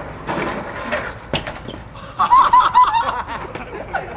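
Skateboard clattering on concrete pavement, with a sharp crack about a second in, then a high, wavering voice for about a second near the middle.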